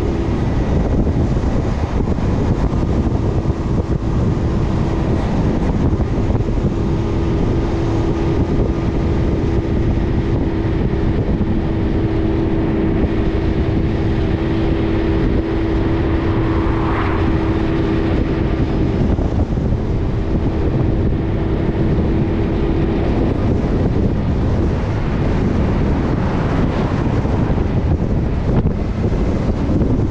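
Wind rushing over an action camera mounted on the roof of a minibus that is being carried on a moving car transporter truck, mixed with the truck's steady engine and tyre noise. A steady hum drops away about three-quarters of the way through, and an oncoming car passes a little past halfway.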